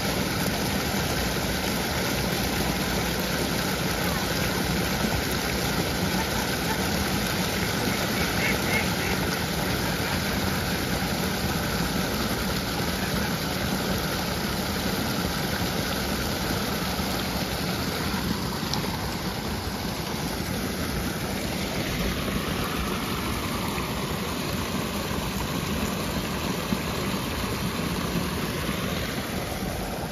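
Shallow water running over rocks in a narrow stone-lined channel: a steady rushing that eases a little in the second half.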